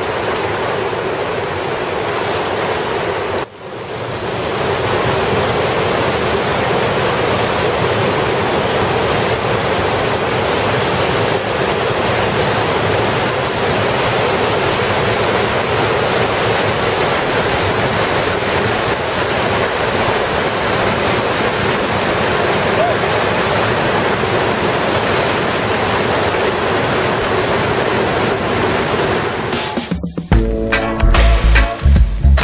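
Roar of a big Colorado River rapid: a steady, loud rush of crashing whitewater, with a brief drop about three and a half seconds in.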